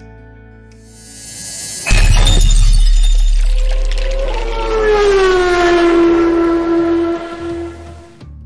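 Cinematic logo-reveal sting: a rising whoosh, a sudden booming hit with a deep rumble about two seconds in, then a ringing tone that slides down and holds until near the end.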